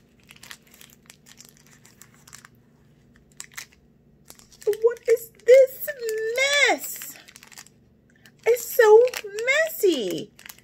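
Faint crinkling and tearing of a snack bar's wrapper as it is opened. A woman's wordless voice twice hums or vocalises in gliding tones, about five seconds in and again near the end; these are louder than the wrapper.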